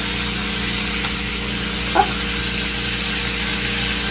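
Bacon strips sizzling steadily in a nonstick frying pan, with a steady low hum underneath.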